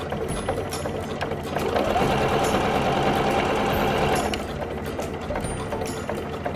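Electric household sewing machine running, stitching a straight seam through webbing and fabric. It runs at a steady pace, running louder and denser from about two seconds in until just past four seconds.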